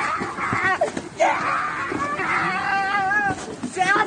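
A person's voice yelling in harsh, strained cries, a few of them rising in pitch, with a short break about a second in.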